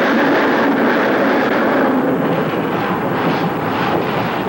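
Roller coaster train running along its steel track at speed, a steady loud rushing noise heard from on board, easing slightly about halfway through.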